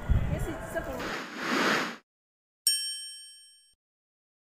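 Market noise with voices, then a rush of noise that swells and cuts off abruptly about halfway through. After a moment of silence, a single bright chime strikes and rings out over about a second: the chime of a channel logo intro.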